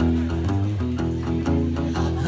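Acoustic guitar playing a blues riff alone between sung lines: picked notes over a steady low bass note, about four strokes a second.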